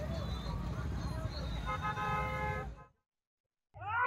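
Outdoor crowd and road noise with a low rumble and faint voices; a vehicle horn sounds for about a second near the middle. The sound then cuts off abruptly to silence for nearly a second.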